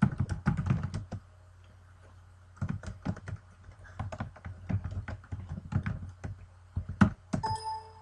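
Computer keyboard typing in two bursts of quick keystrokes as a line of text is keyed in, then one harder keystroke about seven seconds in, the Enter key. A short electronic beep follows near the end, MATLAB's error signal as it rejects the command.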